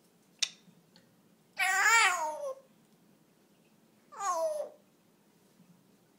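African grey parrot vocalising: a drawn-out call that rises and falls, then a shorter call that falls in pitch, preceded by a single sharp click.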